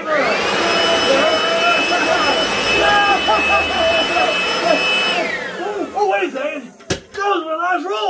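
Corded electric leaf blower switched on, its whine rising quickly to a steady high-pitched run. It is switched off about five seconds in and winds down with a falling whine. A single sharp knock comes near the end.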